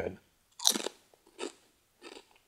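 A person biting into and chewing a crunchy snack: one sharp crunch about half a second in, then a fainter one a little under a second later.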